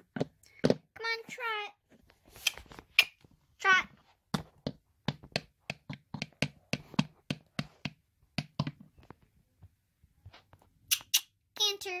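Plastic toy horse figure's hooves tapped on a wooden floor in a clip-clop, about two to three taps a second. A child's voice gives three short, wavering, falling horse whinnies: about a second in, around four seconds in, and near the end.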